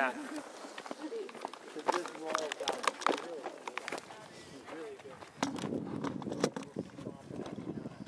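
Indistinct voices of several people talking in the background, with a few sharp clicks and knocks about two to three seconds in.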